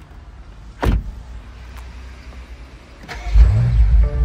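A car door shutting with a single thud about a second in, then the 2024 BMW M8 Competition's twin-turbo V8 starting near the end, catching and flaring up loudly with a rising pitch.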